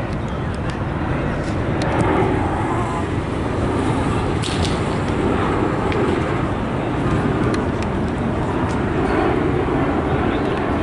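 Steady low rumble of outdoor background noise, with faint voices of players in the distance.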